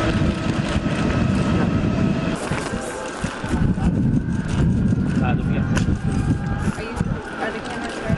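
Indistinct voices of people talking over a steady low rumble, with a few sharp clicks near the middle.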